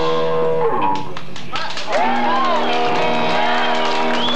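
Punk rock band playing live: a held chord rings and cuts off under a second in, then sliding notes rise and fall in pitch about once a second.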